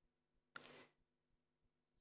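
Near silence, broken by one short faint hiss about half a second in.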